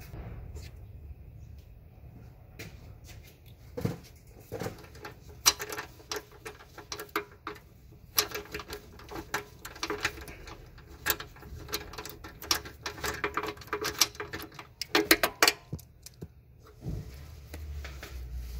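Hand ratchet clicking in quick runs as a bolt is turned out with a socket on a long extension. The clicks come in bursts separated by short pauses.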